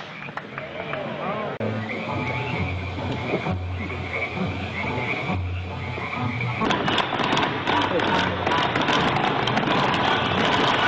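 Pyrotechnics crackling and fizzing over a low, droning hum that comes in three long stretches. About two-thirds of the way in, the crackle thickens into dense, rapid crackling and grows louder.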